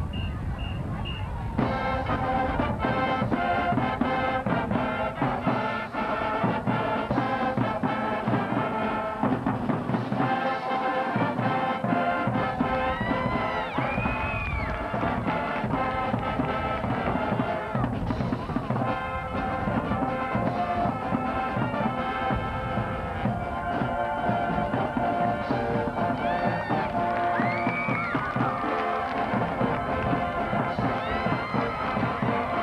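High school marching band playing a brass-led piece on the field. The piece starts about a second and a half in, after a few short high beeps.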